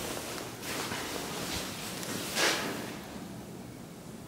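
Rustling and shuffling handling noise with a few soft swishes, the loudest about two and a half seconds in, as the camera is moved around.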